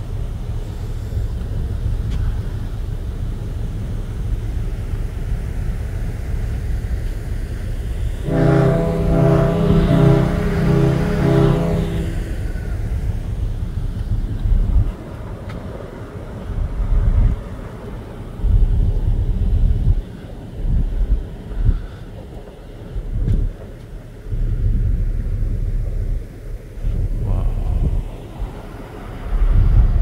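Wind buffeting the microphone on a ferry's open deck, a steady low rumble that turns gusty in the second half. About eight seconds in, a pitched, pulsing tone sounds for about four seconds over it.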